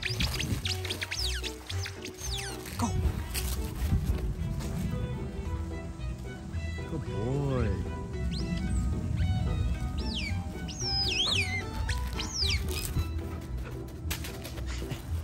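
Background music, with high squeaks from a dog's squeaky toy being chewed, in clusters about a second long at the start and again near the end.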